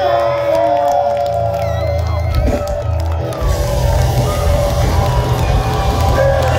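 A live punk band playing loudly through a venue PA, heard from among the audience. The sound grows denser and harsher a little past halfway through.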